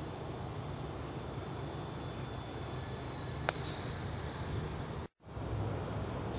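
A golf club striking a ball off the tee: one sharp click about halfway through, over steady outdoor background noise with a faint, steady high tone. Near the end the sound drops out briefly.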